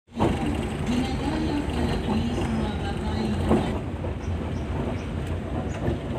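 Car driving, heard from inside the cabin: a steady low engine and road rumble, with faint voices under it.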